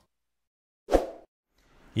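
Near silence broken once, about a second in, by a single short plop-like pop lasting about a quarter second.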